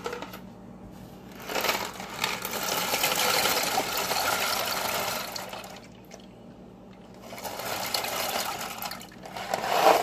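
Dry short pasta rattling as it pours out of a cardboard box into a metal pot, in two pours: a long one, then a shorter one ending in a louder clatter.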